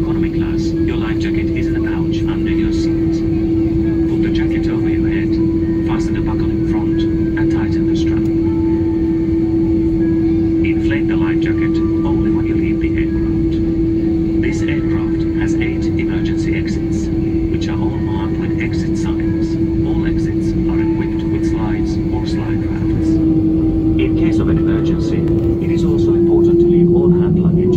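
Airbus A330-300 passenger cabin drone with a steady whine over a low rumble, the whine rising slightly in pitch and getting louder near the end as the aircraft starts to taxi.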